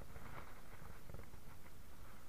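Faint, steady wind and water noise on a small boat at sea, with a few light ticks.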